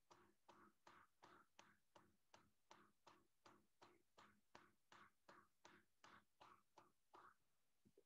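Faint, rapid paddle strikes on soft clay, about three a second, stopping a little before the end. Paddling compresses the clay into a strong base that is unlikely to crack.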